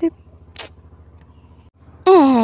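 A pause between voice-over lines. A steady low hum of background noise runs through it, with a clipped voice fragment at the very start and a short hiss about half a second in. The sound drops out for a moment near the end.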